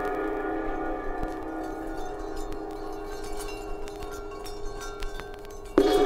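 Song intro: a gong rings out and slowly fades, with faint chime tinkles over it, and is struck again near the end.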